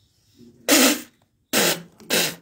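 A person coughing twice, about a second apart, each cough a short harsh burst.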